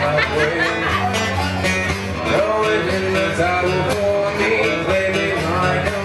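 A song played live on a plucked string instrument, most likely acoustic guitar, with a melodic line gliding over a steady accompaniment.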